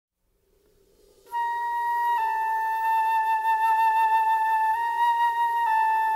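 Opening of a slow jazz orchestra ballad: after about a second of near silence, a single high wind instrument plays long held notes with a slight vibrato over a soft sustained chord.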